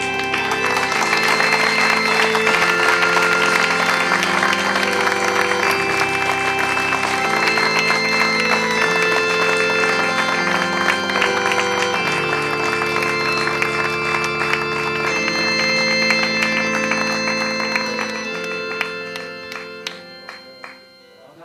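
Audience applauding over music of long held chords that change every few seconds; the music fades near the end.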